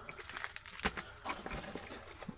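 Plastic bubble-wrap packaging crinkling and rustling as it is handled, with a scatter of small sharp crackles.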